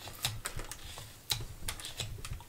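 Carving knife cutting into a block of soft, pale wood: a series of short, crisp slicing clicks, about five in two seconds, the sharpest just past a second in.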